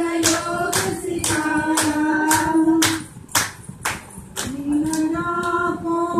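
Women singing a Punjabi gidda folk song (boliyan) to steady hand clapping, about two claps a second. About halfway through the singing stops for a second or so while the clapping carries on, then the singing comes back in.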